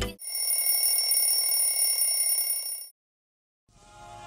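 A high-pitched electronic alarm ringing steadily for about three seconds, then cutting off suddenly, in the way that wakes someone in the morning.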